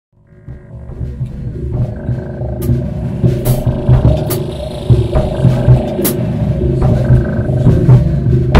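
A rock jam on drums and slap bass fading in over the first couple of seconds: a repeating low bass line under a drum beat with several sharp cymbal hits.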